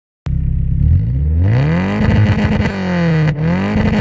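Yugo's 1.6-litre 8-valve four-cylinder engine revved hard through a free-flowing aftermarket exhaust. It climbs quickly from idle and then stutters against the rev limiter, with crackles from the exhaust. It dips briefly near the end and climbs straight back to the limiter.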